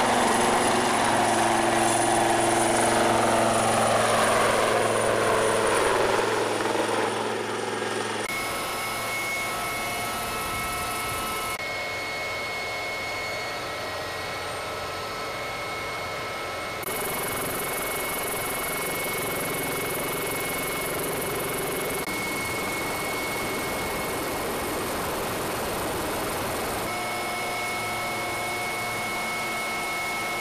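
AW159 Wildcat helicopter flying low past, the pitch of its engine and rotor falling steadily as it goes by over the first several seconds. After that comes a steady helicopter turbine whine and rotor noise as heard from inside the cabin, shifting abruptly in level a few times.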